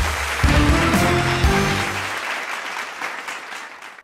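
Studio audience applauding over closing music. The music drops out about halfway through, and the applause fades away toward the end.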